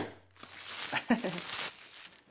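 Plastic packing material crinkling and rustling as hands rummage in a cardboard box, with a sharp click at the very start and a brief vocal sound about a second in.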